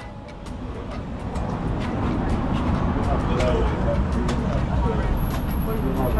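Road traffic noise from vehicles on the roadside, building over the first two seconds and then holding steady.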